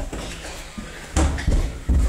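Dull knocks and thumps against a hollow plastic play-structure tube, with three heavier thumps in the second half.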